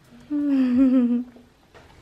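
A voice humming one held note for about a second, wavering slightly and sinking a little in pitch before it stops.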